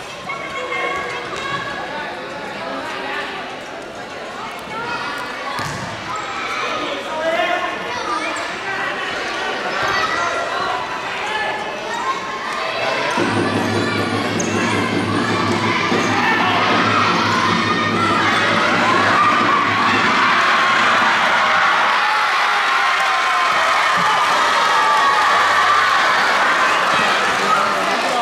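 Futsal ball kicked and bouncing on a wooden indoor court, with echoing shouts from players and spectators. About halfway through, the crowd noise swells and stays loud, with a steady low hum under it for several seconds.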